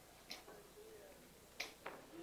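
Near silence: room tone broken by three faint, sharp clicks, one about a third of a second in and two close together near the end.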